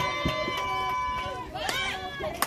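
Softball players' voices chanting a cheer, holding long drawn-out notes, then breaking into shorter shouted calls near the end.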